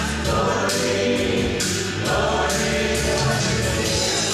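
A song from a stage musical: a group of voices singing together over steady instrumental accompaniment with a bass line.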